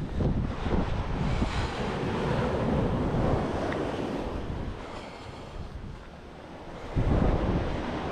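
Wind buffeting the microphone over the wash of sea waves on the shore, with a louder rumble of wind about seven seconds in.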